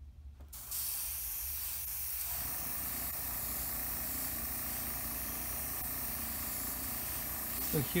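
Gloss black paint sprayed onto the inside of a plastic model saucer as a light-blocking coat: one long steady hiss that starts about a second in and stops just before the end.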